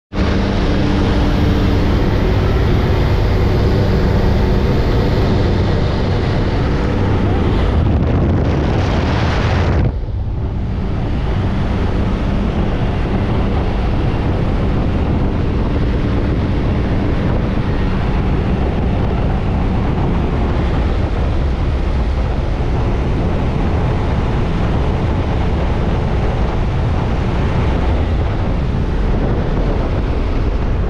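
Steady drone of a skydiving jump plane's engines mixed with loud wind rushing through the open jump door and buffeting the helmet camera's microphone. About ten seconds in the sound changes abruptly and the wind rush takes over from the engine hum.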